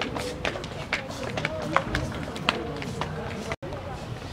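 Group of children talking over one another as they walk, with many sharp footstep clicks; the sound drops out for an instant about three and a half seconds in.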